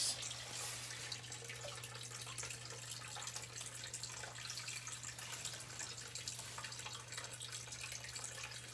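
Aquarium filter outflow splashing and trickling steadily into a turtle tub, with a low steady hum underneath.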